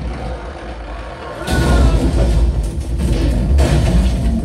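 Film soundtrack played back loud: music over a deep, constant low rumble, with a sudden loud surge of crashing effects about a second and a half in and another near the end.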